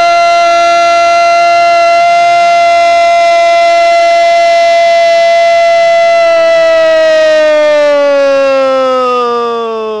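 A man's long drawn-out goal cry, "gooool", held loud on one pitch for about six seconds, then sliding slowly down in pitch over the last few seconds.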